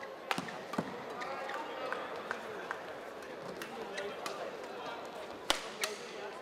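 Badminton rackets striking a shuttlecock in a fast doubles rally: a quick run of sharp hits, some in close pairs, the loudest about five and a half seconds in, over an arena crowd's murmur.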